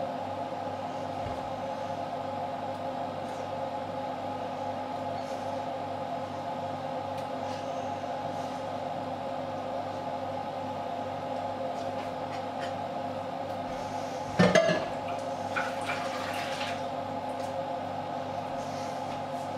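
A steady hum with a loud clatter of a bowl or dish on a steel counter about fourteen seconds in, followed by a few lighter knocks and rattles.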